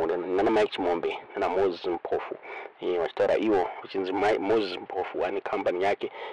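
Speech only: one voice talking without a break.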